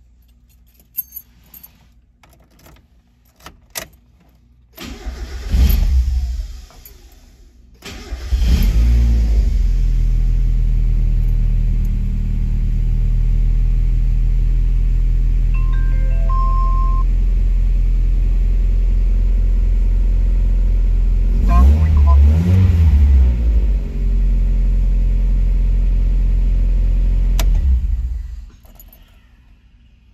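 1990 Mazda Miata's 1.6-litre twin-cam four-cylinder cranked on the starter. It fires briefly and fades on the first try, then catches on the second and settles into a steady cold idle. About two-thirds of the way through the throttle is blipped twice, and near the end the engine is switched off.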